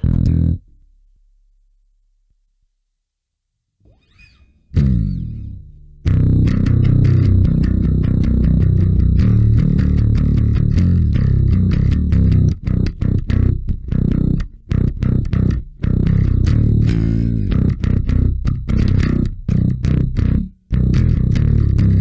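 Five-string Warwick Thumb bass with active pickups played through a Sushi Box FX Dr. Wattson preamp pedal, a Hiwatt DR103-style preamp giving a mild tube-style overdrive, dialled with scooped mids and boosted treble and bass. A short note at the start, a pause, a single note ringing out about five seconds in, then steady riffing with brief breaks from about six seconds in.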